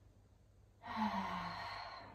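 A woman's audible sigh about a second in: a short low voiced onset that falls in pitch, trailing off into breath over about a second.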